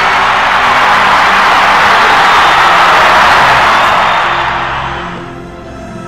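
Arena crowd cheering loudly after a game-winning dunk, over background music; the cheering fades out near the end, leaving the music.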